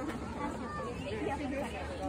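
Background chatter: several people talking at a low level, no single voice standing out.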